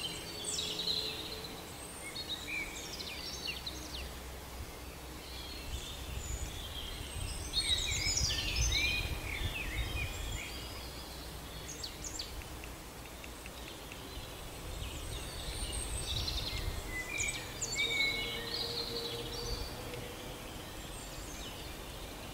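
Small songbirds chirping and singing on and off, busiest about eight seconds in and again around seventeen seconds, over a low steady background rumble.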